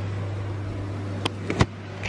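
A steady low mechanical hum, like a kitchen fan or appliance running. About one and a half seconds in come a few sharp clicks, ending in a louder knock.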